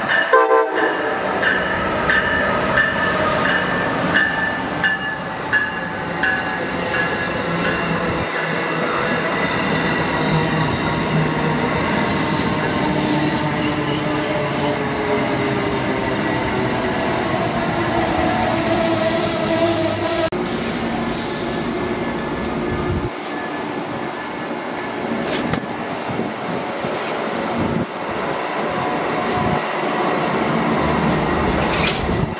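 Amtrak passenger train passing at speed: its ACS-64 electric locomotive sounds its horn right at the start, then a long string of passenger cars rushes past with steady wheel-on-rail rumble and clatter and a whine that slowly falls in pitch. The sound thins out in the last seconds as the train's tail goes by.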